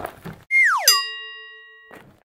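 Cartoon sound effect: a whistle-like tone slides steeply down and lands in a bell-like ding. The ding rings and fades for about a second, then cuts off.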